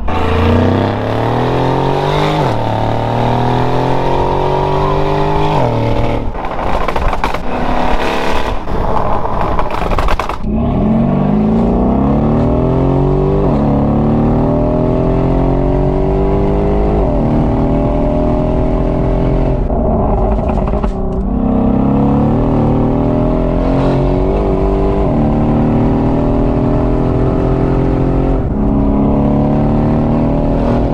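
Mercedes-AMG G63's twin-turbo V8 with a full Quicksilver exhaust, heard from inside the cabin while accelerating hard. The engine note climbs in pitch and falls back at each upshift, over and over.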